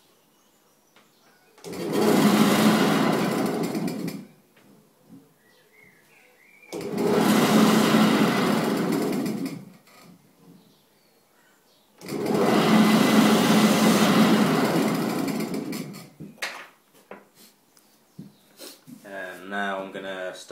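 A turning tool cutting into a laminated mahogany and spotted gum blank spinning on a wood lathe, in three separate cuts of about three seconds each, with pauses between them.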